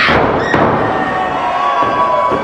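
A heavy thud of a body landing on a wrestling ring's canvas, right at the start, followed by a smaller knock about half a second later.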